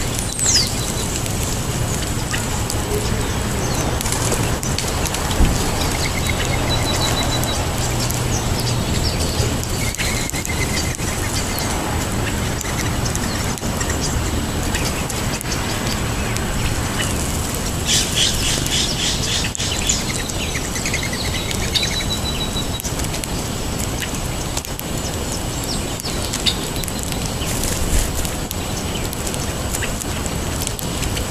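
Small birds chirping and calling: a falling whistle right at the start, short trills scattered through, and a quick flurry of rapid notes about two-thirds of the way in, over a steady background rumble.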